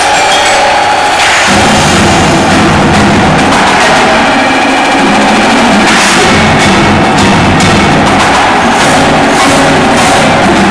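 Indoor percussion ensemble playing loudly: marching snare and tenor drums over marimbas and other mallet percussion, with low bass notes joining about a second and a half in.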